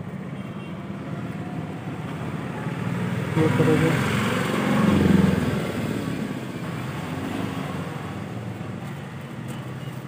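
Traffic noise from a motor vehicle passing: a broad rumble swells from about three seconds in, peaks around five seconds and fades away, over a steady background of road noise.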